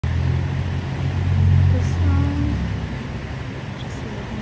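A heavy truck's engine running close by: a low, steady rumble, loudest in the first two and a half seconds, then easing off. Faint voices come through over it.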